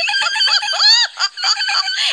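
High-pitched, squeaky chick-like vocal noises from a children's puppet character imitating a hedgehog: a quick string of short cheeps and squeaks with one longer rising-and-falling squeal about a second in.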